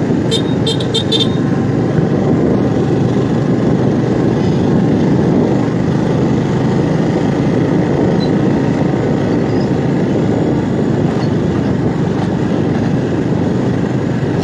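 Small motorbike running steadily while riding on a rough dirt road, its engine mixed with a loud, even rush of wind and road noise. A few brief high-pitched beeps come in the first second or so.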